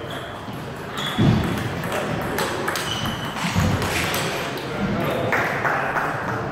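Table tennis rally: the ball clicking off the paddles and the table in quick alternation, about two hits a second, with voices in the background.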